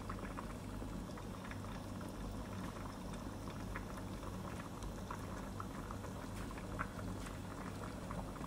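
Creamy mushroom soup bubbling in a pot on the stove: a steady low hum with many small, scattered pops from the thick liquid.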